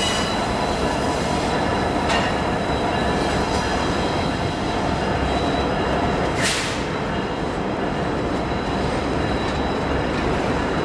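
Empty articulated well cars of a freight train rolling past: a steady rumble of steel wheels on rail with a thin, high wheel squeal. A brief rushing hiss comes about six and a half seconds in.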